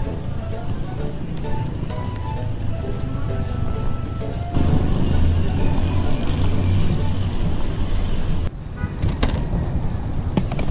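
Riding noise of a road bike on the move: wind on the microphone and tyres rolling, turning louder with a heavy rumble about halfway through as the tyres cross stone paving. A few sharp clicks near the end.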